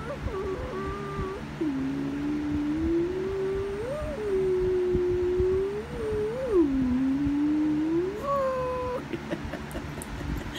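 A person's voice making a long, wavering 'oooo' sound that slides slowly up and down in pitch, with a quick rise and fall about four seconds in and again about six and a half seconds in.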